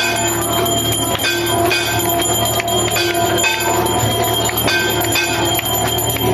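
Temple bells ringing continuously for the aarti: clang after clang, with ringing metallic tones overlapping and repeating at a steady pace.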